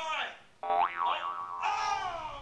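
A comic boing sound effect: a pitched wobble that starts suddenly about half a second in, rising and falling in pitch twice. Bits of a man's voice come before and after it.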